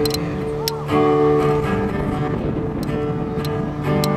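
Acoustic guitar strummed, its chords ringing on, with a new chord struck about a second in.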